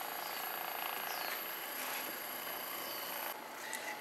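Hypervolt percussion massager running with its head pressed into the thigh muscle: a steady motor buzz that stops about three seconds in.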